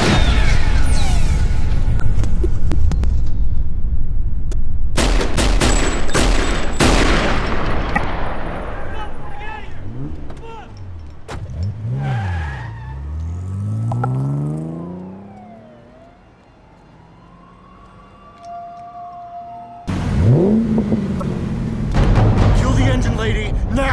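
Television crime-drama shootout soundtrack: a volley of gunshots near the start and again about five to seven seconds in, then a vehicle engine whose pitch swings down and up before fading to a quieter stretch. A loud new passage cuts in near the end.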